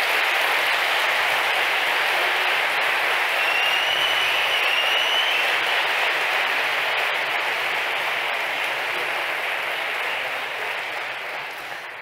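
Audience applauding, steady for about ten seconds and fading near the end, with a brief high tone cutting through about four seconds in.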